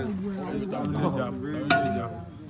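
Voices of a small group talking over one another, with a single sharp click about three-quarters of the way through, followed by a short held tone.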